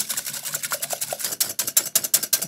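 Wire balloon whisk beating eggs hard in a glass mixing jug: a rapid, even clicking of the wires against the glass, about ten strokes a second, as the eggs are whipped to a froth.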